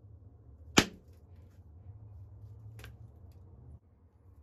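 Sharp crack of a flake snapping off a Flint Ridge chert biface pressed against an antler pressure flaker, a little under a second in, followed by a much fainter click about two seconds later.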